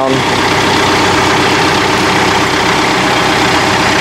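John Deere 4052R tractor's diesel engine idling steadily.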